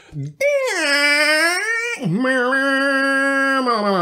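A man's voice singing long held notes with no clear words, as a made-up vocal jingle: the first swoops down and holds, and each of the next two steps lower.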